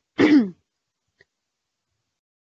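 A woman clearing her throat once, a short voiced sound that falls in pitch.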